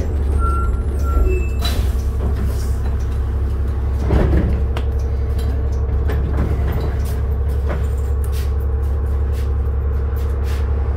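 Inside the cabin of a 2007 New Flyer D40LF diesel transit bus under way: a steady low engine and drivetrain drone, with frequent rattles from the interior fittings.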